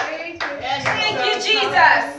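A church congregation clapping, with raised voices calling out in praise over the clapping.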